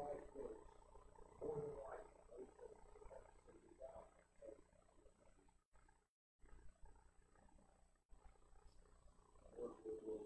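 A man's low voice praying very softly, too faint to make out words, cut by a few brief dropouts to dead silence.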